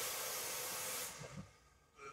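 Air hissing through a non-invasive ventilator's nasal mask and tubing as a breath is delivered. It is a steady high hiss that fades out about a second and a half in.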